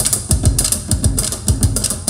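Balinese kendang barrel drums played by hand as an ensemble in a fast, interlocking rhythm, with a blue plastic barrel beaten with a stick. Deep strokes that drop in pitch alternate with sharp high slaps, several strokes a second.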